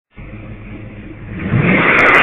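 Muscle car engine revving, getting much louder about one and a half seconds in.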